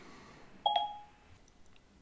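A short electronic chime from Siri on an iPad, a single beep about half a second in.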